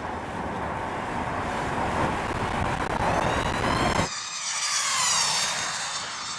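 Red Bull's high-speed camera drone flying at full speed: a rushing noise with its high motor whine rising in pitch. About four seconds in, the high whine sweeps steadily down in pitch as the drone flies past.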